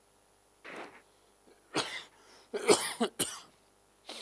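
A man coughing four times: a softer cough about a second in, then three loud harsh coughs close together in the second half.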